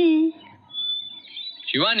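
Shouted speech: a voice calling out the name 'Shivani!' in drawn-out calls, one ending just after the start and another beginning near the end. In the quiet gap between them there is a brief faint high chirp.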